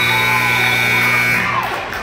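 Gym scoreboard buzzer sounding one long, steady horn tone that cuts off about one and a half seconds in, marking the end of the quarter.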